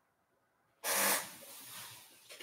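A person breathing out hard: a sudden rush of breath about a second in that fades away over the next second.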